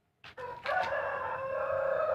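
A rooster crowing: one long crow that starts about half a second in.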